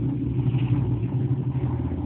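A steady, low engine hum, which drops away near the end.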